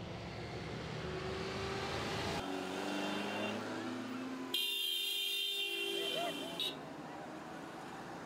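Road traffic rumbling, then car horns sounding in long, steady, held blasts. The loudest horn comes in the middle and cuts off suddenly, leaving faint street sound near the end.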